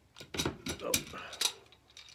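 Hard plastic parts of an aquarium skimmer pump clicking and knocking together as they are handled and slip apart: a run of sharp clicks, about four a second.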